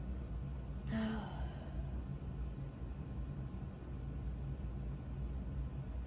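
Steady low hum of a fan running, with a short sigh about a second in.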